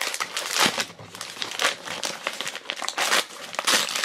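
A thin, crinkly pink wrapper being pulled and peeled off a small toy doll: a continuous run of quick, irregular crinkles and rustles.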